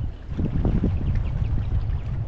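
Strong wind buffeting the microphone, a heavy low rumble, with choppy water slapping against the hull of an Old Town BigWater kayak a few times in the first second.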